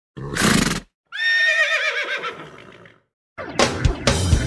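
A short noisy burst, then a horse whinny whose quavering pitch slides down and fades over about two seconds. Music with plucked strings starts near the end.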